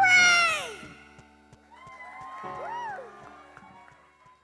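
The last sung note of a boy's voice sliding down steeply in pitch over about a second as the song ends, then fading. Faint rising-and-falling whoops follow a couple of seconds in.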